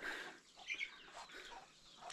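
A chicken clucking faintly, with one short call a little under a second in.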